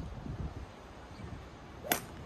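Golf club striking a ball off the tee: one sharp, clean crack near the end, a well-struck shot that sounded good.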